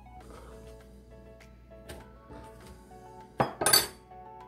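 Soft background music, then near the end a brief, loud double clatter as a handful of zucchini strips is dropped into a glass bowl.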